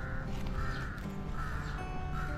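A bird calling over and over in rasping calls, a little more than one a second, over background music with held notes.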